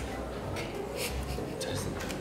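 Pen scratching on a small paper card in short strokes as letters are written by hand.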